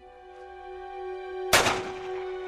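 A single loud gunshot about one and a half seconds in, over film score music holding sustained notes.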